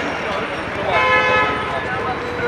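A vehicle horn sounds once about a second in, a steady note held for under a second, over street voices and traffic noise.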